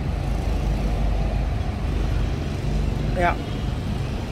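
Toyota Vios's 1.5-litre four-cylinder engine idling steadily, a low even hum.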